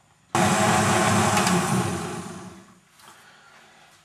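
Countertop jug blender switched on, blending a thick fruit smoothie at full speed for about two seconds, then winding down as it is switched off, the smoothie done.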